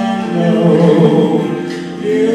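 A man and a woman singing a slow Vietnamese love-song duet into microphones, with long held notes; the phrase fades near the end.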